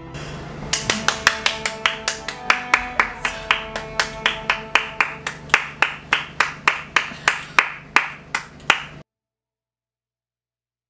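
Steady rhythmic hand claps, about three a second, over a background music track with held notes. Everything cuts off abruptly near the end.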